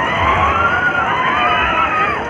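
Riders on a spinning Break Dance fairground ride screaming and shouting, many voices gliding up and down in pitch at once, over crowd noise and a low rumble.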